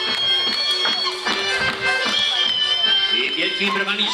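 Live folk band music: an accordion playing a tune over a steady bass-drum beat. A man's voice starts over the music near the end.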